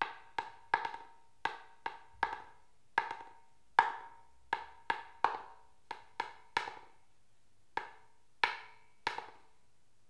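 A berimbau stick (baqueta) striking a handheld block in an uneven series of sharp knocks with a brief ring, many followed at once by a quicker, lighter second hit as the loosely held stick bounces back: a practice drill for the berimbau's rebounding stroke, played without the instrument. The strikes stop shortly before the end.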